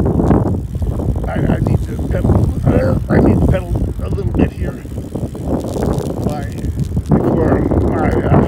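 Wind rushing over a phone microphone on a bicycle coasting downhill at speed, loud and gusty, with broken fragments of a man's voice.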